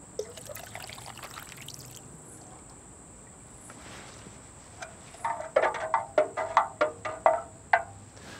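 Milky iron sulphate solution poured from a plastic tub into a galvanised metal watering can, a short splashing pour. Near the end comes a quick run of short, sharp ringing knocks.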